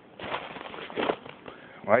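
Footsteps crunching through snow, a few steps with no steady rhythm. A man's voice starts to speak right at the end.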